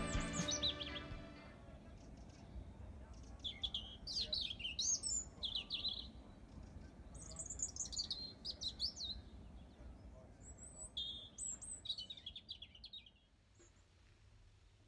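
Intro music fading out over the first second or so, then a small songbird singing in three bouts of short, high, rapidly warbling phrases with pauses between them.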